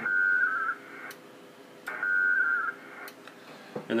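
WINMOR four-tone FSK digital-mode data bursts on an HF amateur radio sound-card link: two short warbling bursts about two seconds apart as the stations exchange acknowledgement frames after the message transfer completes. A few short clicks come between the bursts.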